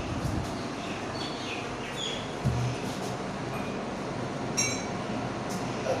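Cups and a drinking glass being handled on a kitchen counter: a dull knock about halfway through and a sharp, ringing clink near the end, over a steady background hum.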